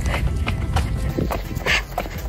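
Background music, with a steady low rumble of wind on the microphone and the knocks of a runner's footsteps on a concrete path.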